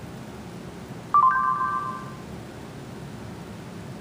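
Google voice search chime from an Android phone: a single short electronic tone that starts suddenly about a second in and fades out within about a second, sounding while the spoken query is being recognised.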